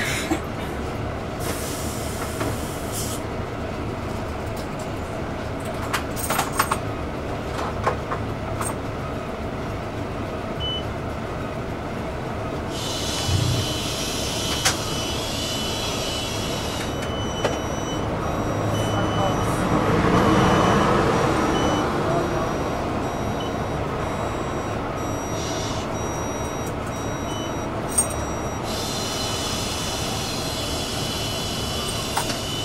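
City bus standing at a stop with its front door open, the engine idling steadily, with scattered clicks and knocks. A broad swell of louder noise comes about two-thirds of the way in, and short high beeps repeat through the second half.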